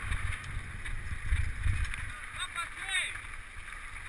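Mountain bike riding over a rough dirt trail, with low thumps and rumble as the bike-mounted camera jolts over the ground, loudest in the first half. Short voice calls from riders come in during the second half.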